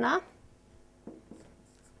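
Faint squeaks and strokes of a felt-tip marker writing numbers on a whiteboard, a few short ones about a second in, following the tail of a spoken word.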